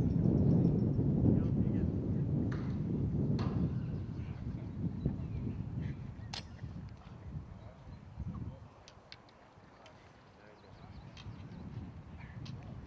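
A single sharp clack about six seconds in as a jumper's hand swats the stacked vanes of a Vertec vertical-jump tester, over a low outdoor rumble that is heaviest in the first few seconds and then fades.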